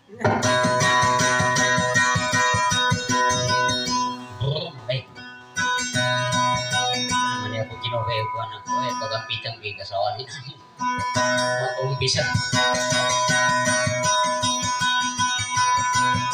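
Acoustic guitar strummed in a steady rhythm, picked up by a microphone, starting suddenly at the outset. Midway the playing thins out under a voice, and full strumming resumes about twelve seconds in.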